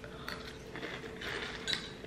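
Faint crunching of dry Pumpkin O's cereal as it is chewed, a few brief clicks among it.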